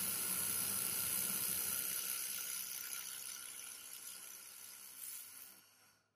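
Handheld laser welding torch running a weld on stainless steel: a steady hiss of shielding gas and weld sizzle that fades over the last few seconds and cuts off just before the end.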